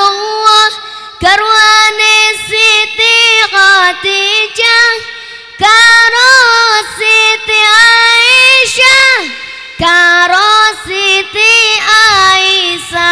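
A boy singing a Javanese sholawat solo into a microphone, with no accompaniment. His melody is ornamented and wavering, in long phrases broken by short breaths.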